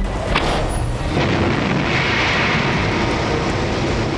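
Rushing, rumbling roar of a Mars landing animation's sound effects, with music underneath, played back over a lecture hall's loudspeakers as the descent stage separates and the descent engines start. It builds to a steady roar about a second in.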